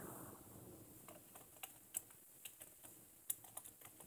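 Typing on a computer keyboard: about a dozen faint, irregularly spaced keystrokes.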